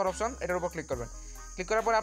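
A person's voice over background music, breaking off briefly about a second in, with a steady high tone running underneath.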